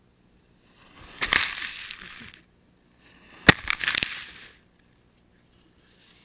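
Skis scraping and spraying snow in two bursts: a longer rasp about a second in, then a sharper, louder one halfway through.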